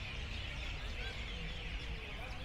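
Many small birds chirping together in a continuous chatter of short high calls, over a steady low background rumble.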